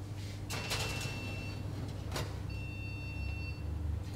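A metal pan is set onto an oven's wire rack, with a few knocks and a scrape, while a short electronic tone from the oven repeats about every two seconds over a steady low hum.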